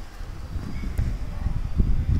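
Wind buffeting a phone's microphone: an uneven low rumble that flutters up and down.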